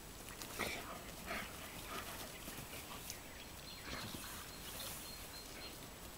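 Dogs playing tug-of-war with a garden hose, making short, faint play sounds in a handful of brief bursts, most in the first couple of seconds.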